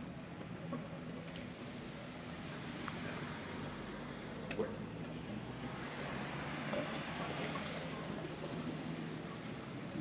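Steady seaside outdoor ambience: a noisy wash of wind and surf with a faint low engine hum underneath and a few light clicks.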